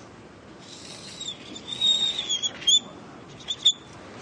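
Writing on a board: a high, scratchy squeaking that starts about half a second in and carries thin squeals for about two seconds, then two short squeaks near the end, as Hebrew letters are written out.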